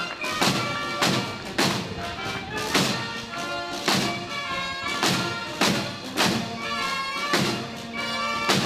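A band playing a march: wind instruments hold sustained notes over a steady bass-drum beat, about one beat every 0.6 seconds.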